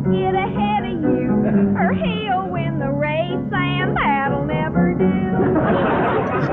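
A woman singing a song in a high voice with wide swoops up and down in pitch, over steady piano accompaniment. The singing ends about five and a half seconds in and applause starts.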